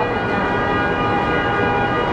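A vehicle horn sounding continuously as a loud, steady chord of several tones, taken for a car alarm going off.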